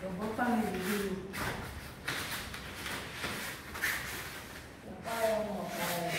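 Scuffling of bodies and clothing against a foam wrestling mat as two women grapple, with short breaths between. There are wordless voice sounds near the start and again near the end.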